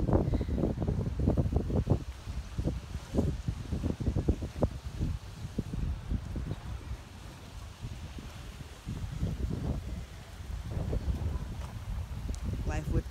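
Wind buffeting a phone's microphone in uneven gusts, a low rumble that comes and goes. It eases for a few seconds past the middle and picks up again.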